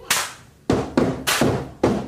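Sharp percussion hits opening a song, about five strikes in two seconds in an uneven rhythm, each ringing briefly and fading.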